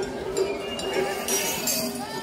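Japanese festival float music (matsuri-bayashi) with a steady pitched line and crowd voices, joined about a second and a half in by a bright metallic jingling.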